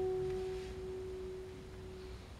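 A single classical guitar note left to ring, slowly fading away.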